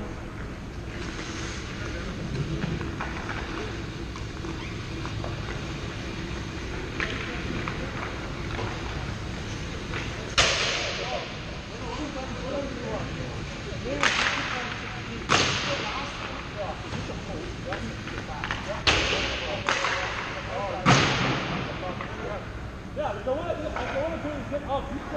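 Hockey skate blades scraping and carving on the ice: about six sharp hissing scrapes in the second half, each fading over about a second, over the rink's steady background with distant voices.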